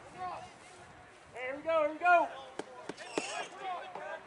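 Distant voices calling out across an outdoor soccer field, with a few short shouts about halfway through. A couple of short, sharp knocks follow the shouts.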